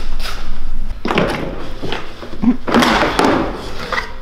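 Plastic side skirt of a Mercedes W220 S-Class being wrenched off the sill, scraping and clattering in two bursts, about a second in and again near three seconds, as its clips let go.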